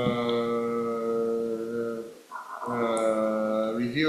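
A man's voice drawing out two long, level-pitched hesitation sounds ("uhhh"), the first about two seconds long and the second shorter, with a brief gap between them.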